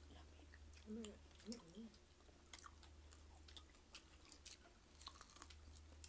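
Faint chewing with small wet mouth clicks from a person eating a mouthful of fried fish and rice by hand, over a low steady hum.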